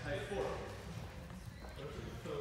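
Indistinct speech, loudest in the first half-second, over a steady low rumble.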